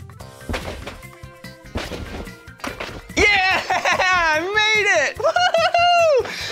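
A few dull thuds of a person bouncing on a trampoline, under light background music. From about three seconds in comes a loud, high, wordless vocal that swoops up and down in pitch.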